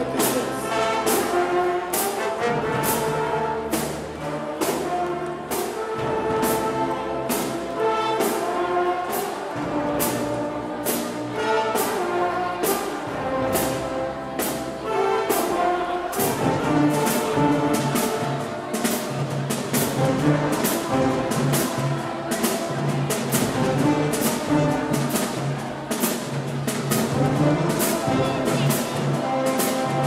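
High school marching band playing: brass horns over a steady drum beat, with a heavier bass line coming in about halfway through.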